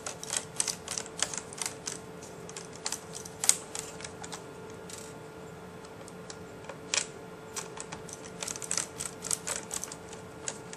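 Irregular light clicks and taps, with a lull around the middle, as small screws are handled and set into a netbook's plastic bottom case with a screwdriver.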